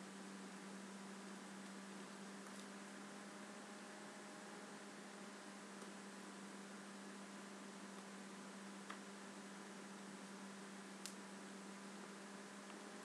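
Near silence: a steady low electrical hum over faint hiss, with two faint ticks in the second half.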